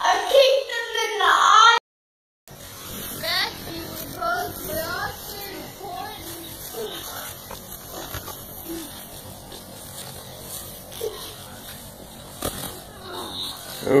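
Children's voices shouting and calling out during play-fighting. They are loud at first, then stop dead for about half a second at an edit. After that come faint, scattered voice sounds, and louder voices return at the end.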